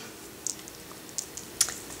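A few faint, scattered small clicks, about six, over quiet room tone.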